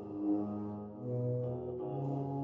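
Soft music of a low brass instrument holding slow, sustained notes, a few overlapping notes that change about every half second.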